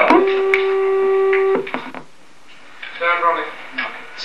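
A steady tone held at one pitch for about a second and a half, then cut off abruptly.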